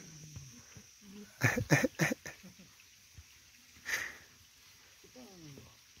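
A dog whining softly in short bouts, wanting to play, with a falling whine near the end. A few louder short breathy sounds come in around a second and a half to two seconds in.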